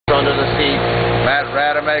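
A 9.9-horsepower outboard motor running steadily, a low rumble with a constant hum under it; a man starts talking about halfway through.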